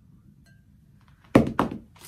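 Two sudden thunks about a quarter second apart, the first the louder, about one and a half seconds in: a solid object knocking against furniture.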